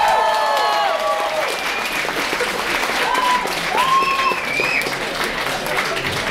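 Concert audience applauding, with a few high shouts from the crowd, one fading out about a second in and two more short ones around three and four seconds in.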